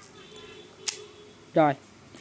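A single sharp click about halfway in from the clutch (free-spool release) button of a Daiwa Super Tanacom 500W electric fishing reel, over a faint steady hum.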